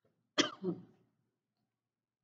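A woman coughing into her fist: a sharp cough about half a second in, followed at once by a second, weaker one.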